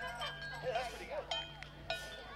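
A lull in the band's playing: children's voices and two sharp metallic clinks with a short ring near the end, a handheld metal percussion instrument being struck.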